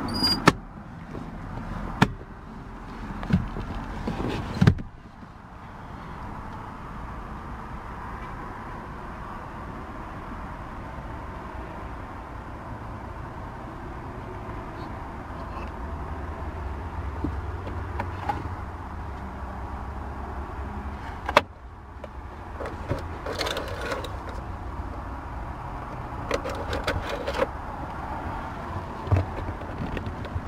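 Someone moving about inside a parked car, with the engine off. A few sharp knocks and clicks of interior trim being handled ring out over a low steady background hum, with rustling and small clicks near the end.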